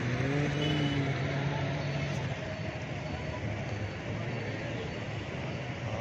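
Boat motor running steadily with a constant rushing noise, and faint voices in the first couple of seconds.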